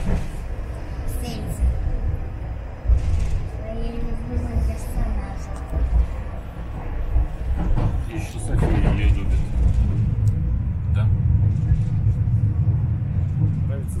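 Steady low rumble of a moving bus, heard from inside the passenger cabin, with faint voices now and then.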